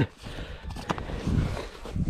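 A man's short laugh, then low rumble and faint rustling as the camera is handled, with a single sharp click about a second in.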